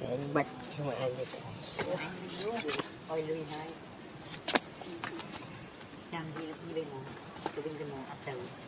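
Indistinct voices of people talking throughout, mixed with low wavering calls. A few sharp clicks, the loudest at about four and a half seconds.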